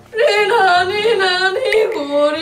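A singing voice in a wavering, yodel-like warble, starting just after a brief pause and carrying on without a break.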